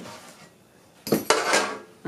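An antique thin-walled metal box is set down on a wooden table about a second in: a sharp tinny clank and a short rattle of sheet metal.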